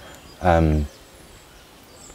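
A man's short spoken 'um' about half a second in, then a pause with only faint outdoor background.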